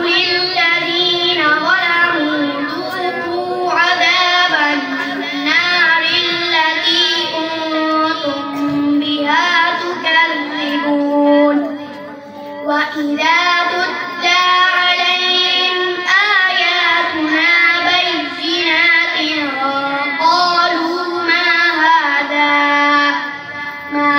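A boy reciting the Quran from memory in a melodic tajweed style, with long held and ornamented notes. The recitation runs in long phrases separated by short pauses for breath.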